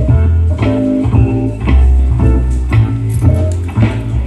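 A live band playing with electric guitar and bass guitar between sung lines. The bass notes change about twice a second, under regular sharp beats.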